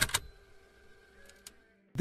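Music cuts off abruptly with a sharp click, leaving faint room hiss and hum with two faint ticks about a second and a half in. A moment of dead silence follows.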